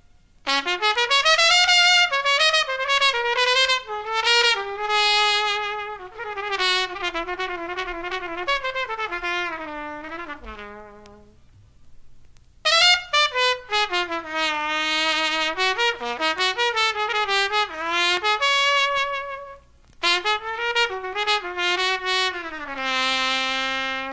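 Jazz trumpet played back from a vinyl record, playing a melody in long phrases with short breaks between them.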